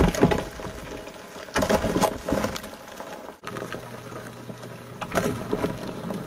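A pet African bullfrog lunging in a plastic tub, with loud, rough bursts of sound: one right at the start, another about two seconds in and a third about five seconds in.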